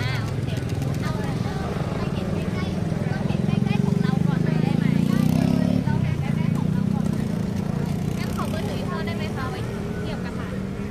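A motor vehicle's engine running close by as a low, steady drone. It grows louder to a peak about four to six seconds in, then eases off, under people talking.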